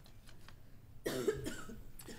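A person coughing, a single rough burst starting about a second in.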